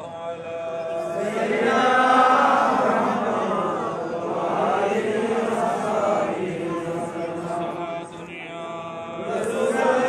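Men's voices chanting a devotional salam of a milad-qiyam in call and response. A lead voice sings held notes alone, and the gathering answers in chorus about a second in and again near the end.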